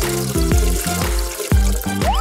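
Bath tap running, water pouring into the tub as a steady hiss, over children's background music with a bouncy bass line.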